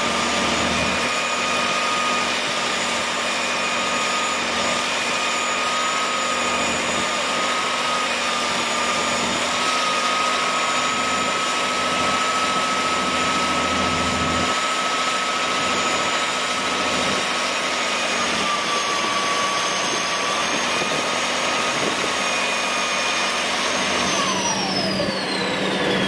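Six-cylinder International Harvester UDT-466 turbo diesel of a 1979 Galion T-500M motor grader running steadily, with high-pitched whines over the engine noise. Over the last two seconds the whines fall steeply in pitch.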